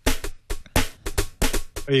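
Korg WaveDrum Mini electronic percussion pad struck by hand, playing sampled drum sounds through its built-in speaker in a quick, uneven run of about ten sharp hits.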